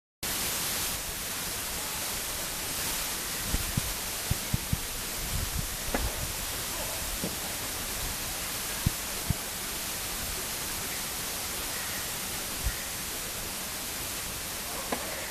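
Steady hiss of a small camera microphone, with a scatter of short, soft knocks, several close together about four seconds in.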